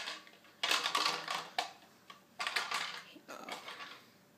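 Hard plastic shape-sorter ball and its plastic shapes clattering and rattling as a toddler turns the ball and pushes a shape against it, in three short bouts.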